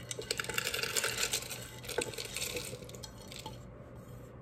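Dry, crunchy dehydrated paprika pepper pieces sliding off a plate and pattering into a plastic Magic Bullet blender cup. It is a dense run of small clicks that thins out after about three seconds.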